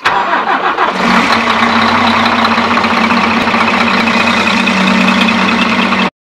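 2008 Scania K380EB bus diesel engine starting: a brief crank, then it catches almost at once and settles into a loud, steady idle about a second in.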